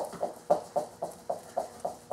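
Electric guitar picked in a run of short single notes, about four a second.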